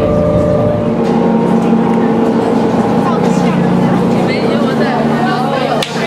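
Passenger ferry engines droning steadily inside the cabin, with people's voices over the top. The drone cuts off near the end, giving way to crowd chatter.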